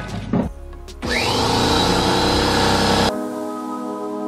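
An electric air compressor's motor starting up with a rising whine and running steadily for about two seconds. It cuts off abruptly near the end as background music with sustained tones comes in.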